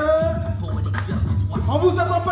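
Dance music over a sound system, with a steady bass line and a gliding vocal line.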